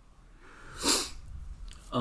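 A person's single short, sharp burst of breath about a second in, against quiet room tone.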